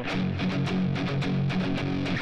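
Electric guitar, a Fender Stratocaster, playing a slightly palm-muted power chord in a lazy galloping down-down-up picking rhythm, about six pick strokes a second. The light muting makes the notes pop.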